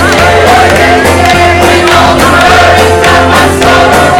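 Church choir singing a gospel song with a worship band: sung melody over a steady bass and drum beat.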